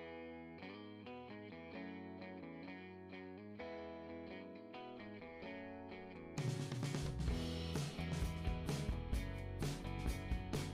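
Quiet background music with melodic notes. About six seconds in it becomes fuller and louder, with a steady beat.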